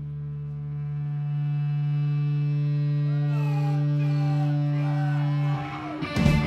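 Amplified electric guitar drone: one low note held and swelling in level, with wavering, gliding high tones rising above it from about halfway. It breaks off shortly before the end.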